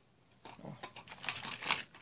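Irregular rustling and crinkling of craft leaves being handled and pressed into a pot of wet plaster close to the microphone, starting about half a second in.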